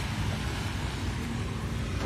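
Steady low engine-like rumble with a faint hum, running evenly without change.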